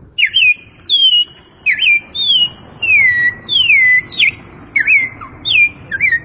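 A man whistling an imitation of a songbird's song: a run of about a dozen short, clear whistled notes, most sweeping downward, with two longer falling slurs in the middle.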